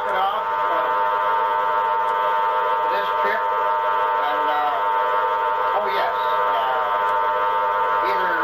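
Spiricom device putting out a steady drone of many fixed tones at once, like a buzzing chord. Every few seconds the tones warble into a buzzy, robotic voice-like sound: the electronic voice taken to be Dr. Mueller coming through the device.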